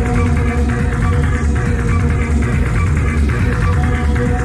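Techno from a club DJ set: a steady driving beat under held synth tones.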